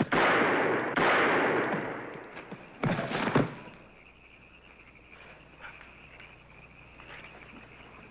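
Revolver gunfire in a Western gunfight: two shots about a second apart, each with a long echoing tail, then two more sharp reports close together about three seconds in. Afterwards, a faint, steady, high insect chirring.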